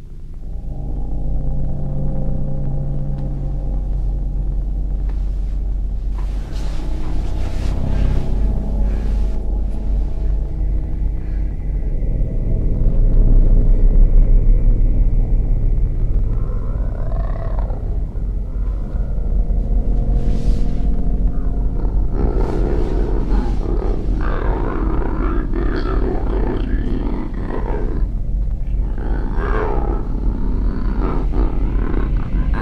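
Low rumbling horror drone with sustained layered tones. In the last third a harsher, distorted roar-like sound joins it.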